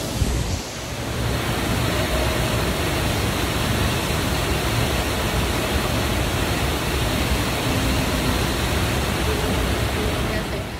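Steady rushing of a waterfall, an even wash of falling-water noise that sets in about a second in.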